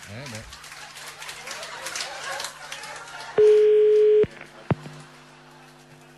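Telephone ringback tone on an outgoing call: one steady beep of just under a second, about halfway through, as the called line rings unanswered. Faint line noise and murmur come before it, and a short click follows.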